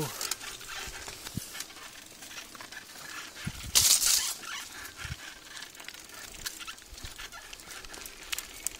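A mountain bike pushing through an overgrown grassy trail: leaves and stems rustling and brushing against the rider and camera, with scattered clicks and rattles. A loud swish of brushing vegetation comes about four seconds in.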